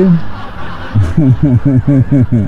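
A man laughing, a quick run of chuckles starting about a second in.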